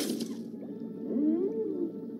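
Underwater ambience looping behind an aquarium-themed DVD menu: a steady low watery rumble with one whale-like moaning call that rises and falls about a second in. It starts suddenly with a brief hiss that dies away within half a second.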